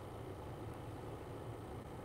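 Steady low background hum and hiss: room tone from an open microphone, with no distinct event.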